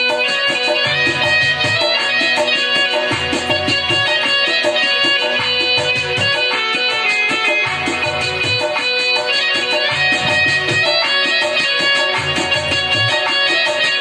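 Live Indian ensemble music from keyboard, harmonium and tabla, with a low pulse recurring about every two and a half seconds.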